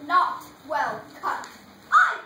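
A child's high voice in short swooping exclamations, about four in two seconds, each sliding up and down in pitch, with a whining, whimpering quality.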